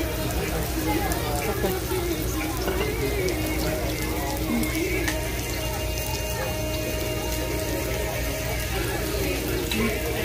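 Meat sizzling steadily on a tabletop Korean barbecue grill, under background voices and music.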